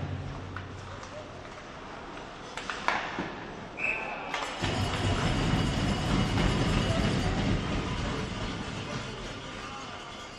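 Ice hockey game: a sharp crack about three seconds in, then a short whistle blast, then an arena crowd cheering a goal from about halfway through.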